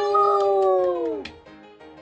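Two voices holding a long, drawn-out cheer of "yay" that falls in pitch and fades out a little over a second in. Soft keyboard music follows.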